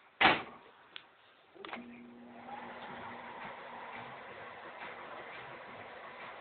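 Microwave oven door shut with a thump, then a short click. A second click switches the oven on, and it runs with a steady hum.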